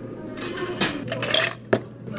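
Clinks and knocks of cafe drinkware and ice being handled: a few sharp taps in the second half, as a stainless pitcher, a cup and ice in a scoop are moved about.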